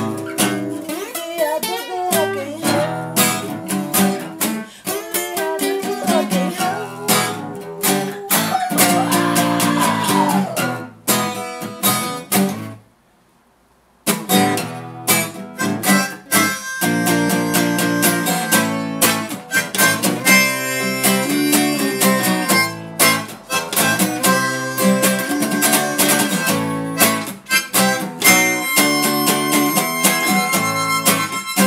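Acoustic guitar music with bending melodic lines. About halfway through it breaks off for a second or so of near silence, then resumes with steady held notes over the guitar.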